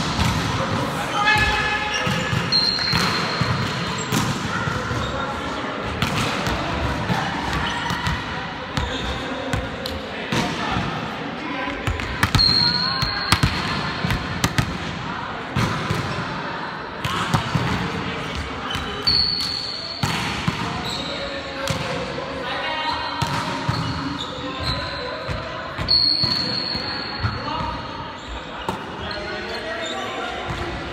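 Indoor volleyball rally on a gym court: players calling out and talking, and sharp slaps and thuds of the ball being hit and landing, repeated throughout. Short high squeaks, about four of them, likely sneakers skidding on the floor.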